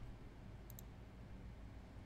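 A single computer mouse click, a quick press-and-release about three quarters of a second in, against quiet room tone.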